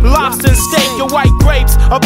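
Hip hop track: rapping over a beat with deep, repeated bass notes.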